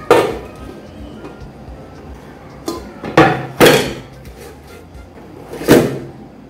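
An upturned aluminium ring cake pan knocking on a metal serving platter as a freshly baked cake is turned out: one hard thump as it comes down, then a few more knocks about three seconds in and one just before the end, loosening the cake from the pan.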